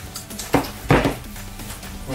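Two sharp cracks of plastic, about a third of a second apart, as a laptop battery pack's casing is pulled apart by hand to free its circuit board.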